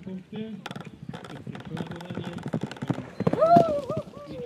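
Hoofbeats of a horse galloping down a grass and dirt lane. Near the end comes a loud pitched call that rises and falls.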